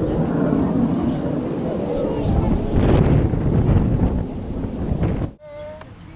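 Wind buffeting the camera's microphone, a loud, steady, low rumble that cuts off abruptly about five seconds in, followed by a brief high-pitched voice.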